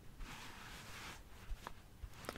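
Faint handling of a ball of yarn: a soft rustle with a couple of small clicks in the second half.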